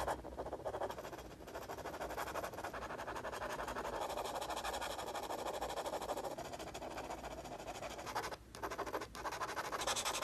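Fine-tip pen scratching in quick, dense strokes across the aluminium back of an iPhone 6s, with two brief pauses near the end.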